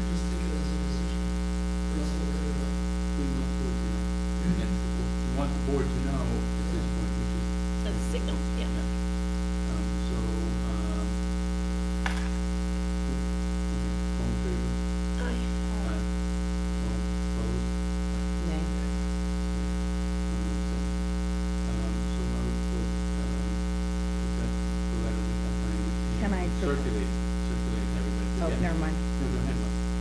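Steady electrical mains hum picked up by the meeting's microphone and recording system, a low buzz with a stack of evenly spaced overtones. Faint, low voices murmur now and then under it.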